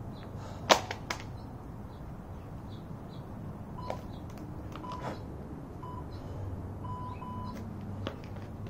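Jump rope handles set down on a mat over asphalt: one sharp clack less than a second in and a lighter one just after. Behind it a steady low rumble, with a few faint taps and short chirps later on.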